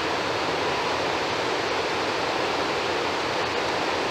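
Water discharging through the open spillway gates of the Afobaka Dam and crashing into the river below: a steady, even rush. The reservoir is being relieved of surplus water because it stands too high.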